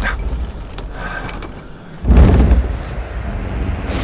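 Engine drone of a twin-engine propeller plane. A sudden loud rush of noise comes about two seconds in and settles into a steady drone.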